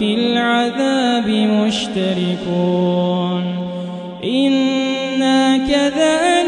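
A male imam's melodic Quran recitation (tajweed) carried over a microphone, with long ornamented, wavering notes. A drawn-out note holds and fades near the middle, then a new phrase starts about four seconds in.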